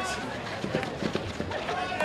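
Field hockey match sound: players' voices calling out across the pitch, with a few short knocks on the turf about a second in.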